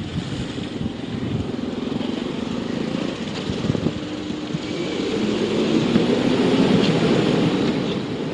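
Street traffic noise with a car engine running close by as an SUV pulls away, getting louder in the second half.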